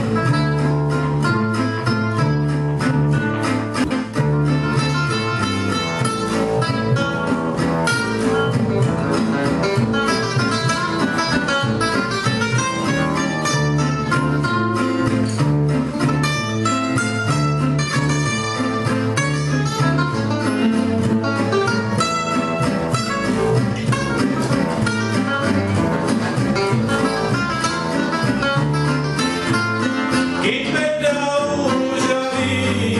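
Gypsy-jazz (jazz manouche) trio playing an instrumental passage: two acoustic guitars, one picking quick single-note melody lines over the other's rhythm strumming, with a plucked double bass keeping a steady beat underneath.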